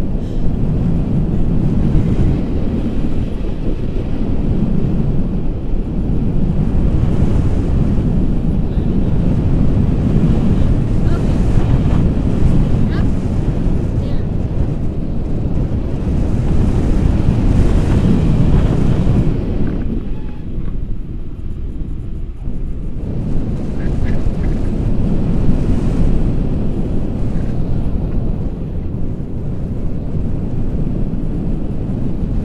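Wind buffeting the camera's microphone during a tandem paraglider flight: a loud, steady low rumble that eases for a few seconds about two-thirds of the way through.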